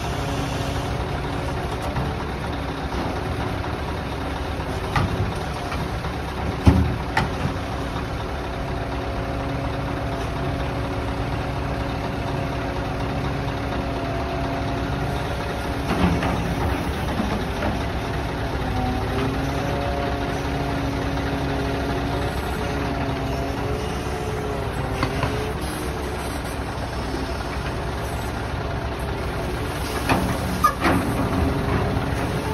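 A Scania V8 truck engine running steadily to drive a truck-mounted crane's hydraulics, with a whine whose pitch shifts about midway as the crane is worked. A few short knocks come from the clamshell grab, about five to seven seconds in and again at about sixteen seconds.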